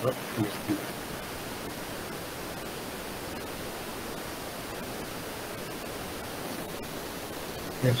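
Steady hiss from an open microphone on a video call, with no other sound in it.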